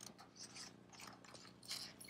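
Near silence with faint clicks and a soft rustle as a picture book's page is turned by hand.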